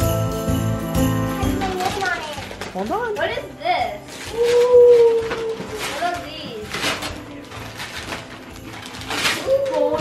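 Jingle-bell Christmas music stops about a second and a half in. Then come children's drawn-out, wordless exclamations and the crackle of wrapping paper being torn off a present.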